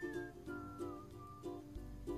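Faint background music of soft plucked-string notes, about two notes a second.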